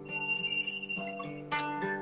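Acoustic guitar: single plucked notes left to ring, with a high sustained note in the first second and a new pluck about one and a half seconds in.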